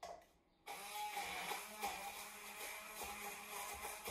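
Handheld immersion blender switching on about two-thirds of a second in and running steadily, its motor whirring as it purées chopped jalapeños with sour cream and olive oil in a tall cup.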